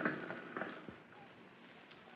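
A pause in an old radio transcription recording: the last room echo fades out in the first second, leaving faint steady hiss with a few soft clicks.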